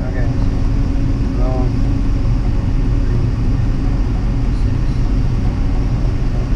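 A steady low mechanical drone with an even level, and a faint voice briefly about a second and a half in.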